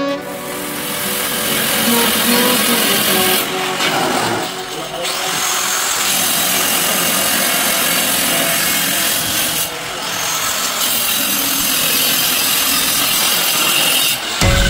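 Handheld electric marble cutter with a diamond blade grinding through a porcelain skirting tile strip, a loud, dense rasping that eases briefly twice as the cut goes on.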